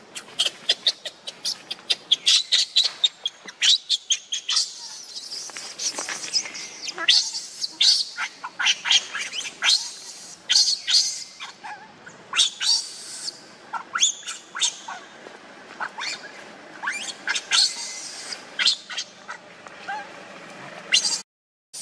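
Baby macaque crying in many short, high-pitched screams, one after another, while it begs its mother for milk.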